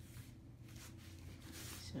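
Faint handling of a fabric clarinet case being opened, with a brief soft rustle near the end over a low hum.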